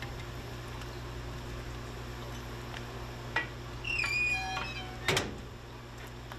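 Metal firebox door of a wood-fired maple sap evaporator being shut: a knock, then a squeal from the hinges about four seconds in, then a sharp metal clang just after five seconds. A steady low hum runs underneath.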